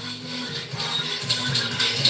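Background music: an instrumental stretch of a song with steady held low notes.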